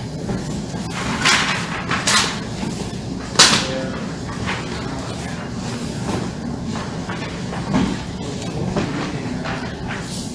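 Paper being handled: a few short, sharp rustles in the first few seconds, the loudest about three and a half seconds in, over steady room noise.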